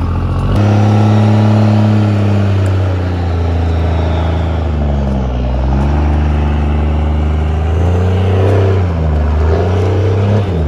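Dodge Ram's 5.9 L Cummins diesel engine under heavy throttle, pulling a semi dry-van trailer across soft mud. It surges up about half a second in, then its speed sags and recovers twice, around the middle and near the end, as the load drags on it.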